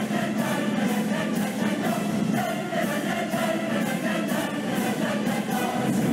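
A large choir singing full-voiced with a symphony orchestra.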